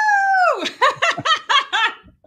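A person laughing: a long, high-pitched squeal that drops away, then a quick run of short laughs.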